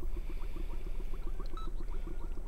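Oxygen bubbling through the water of a bedside humidifier bottle feeding a nasal cannula: a steady, fast stream of small bubbles over a low hum.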